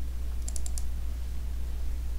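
Four quick computer keyboard keystrokes about half a second in, over a steady low hum.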